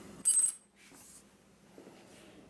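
A short, bright metallic clink with a brief ring, about a quarter second in, as small metal stove parts knock together while being handled; faint handling rustle follows.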